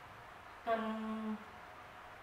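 A woman's voice drawing out a single word on one steady pitch for under a second, about halfway through; otherwise low room tone.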